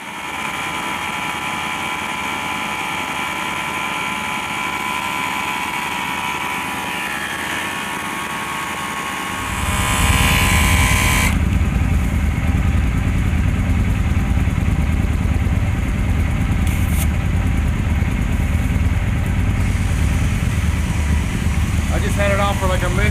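Dynaplug Mini 12-volt air compressor, wired to a motorcycle battery, running steadily with a high whine as it pumps up a motorcycle tyre. About nine seconds in there is a brief hiss, and a deeper, louder running sound takes over.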